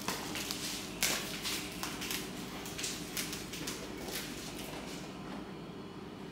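Faint footsteps and light handling clicks and taps in a quiet room, the clearest tap about a second in.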